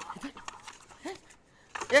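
A few brief murmured vocal sounds, short grunts or hums, quieter than the dialogue around them, then a quiet stretch in the second half.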